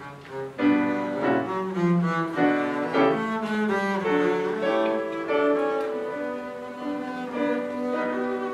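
Double bass played with the bow in a slow, singing solo melody, accompanied by grand piano. After a brief lull at the start, both instruments resume about half a second in.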